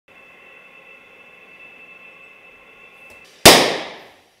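Oxyacetylene rosebud torch flame burning with a steady hiss, then a single loud, sharp pop about three and a half seconds in that dies away quickly.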